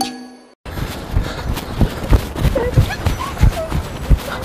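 A short piece of advert music fades out, a moment of silence, then quick footsteps on hard ground, about three a second, with a few short chirping sounds over them.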